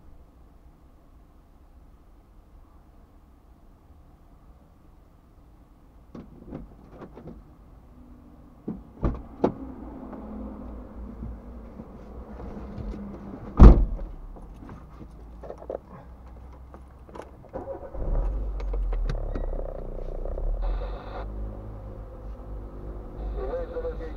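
Someone getting into a parked car, heard from inside the cabin: a few clicks and knocks, then one loud car door slam a little past halfway, the loudest sound. Near the end a steady low rumble sets in as the car's engine starts and runs.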